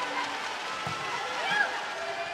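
Volleyball arena crowd noise: many voices calling and cheering at once, with a short shout about one and a half seconds in, as the teams wait for the serve.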